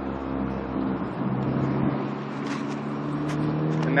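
Car engine idling steadily, with a few faint clicks in the second half.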